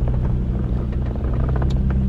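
Car engine and road noise heard from inside the cabin while driving: a steady low drone, with one light click near the end.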